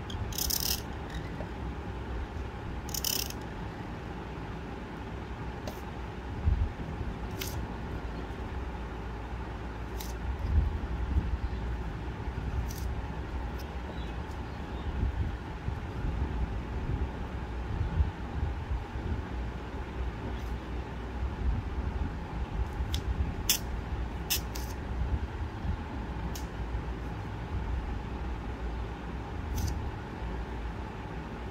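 Bamboo reed pen scratching on paper in short, separate strokes, about a dozen spread unevenly, over a steady low rumble.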